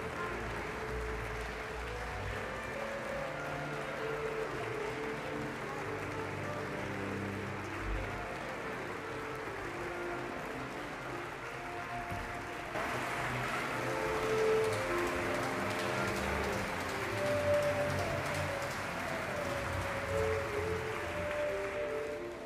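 Symphony orchestra holding long, slowly changing notes in the low and middle range. About halfway through, a louder wash of hall noise comes in over them.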